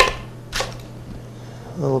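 A chef's knife chopping through radicchio onto a wooden butcher block: two sharp knocks, the first loudest, the second about half a second later.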